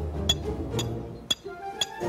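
Hammer driving awning pegs into the ground: sharp ringing metallic strikes about twice a second, with background music underneath.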